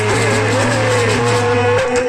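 Live Indian devotional bhajan band playing through a PA: a harmonium melody over a steady low held note that drops out just before the end, with dholak and jingling percussion.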